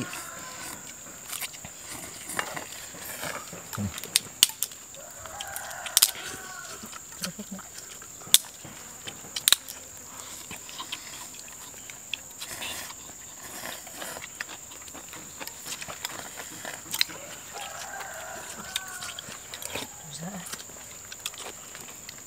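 Spoons clinking against ceramic soup bowls as people eat, in scattered sharp clicks. A rooster crows twice in the background, and a steady high whine runs underneath.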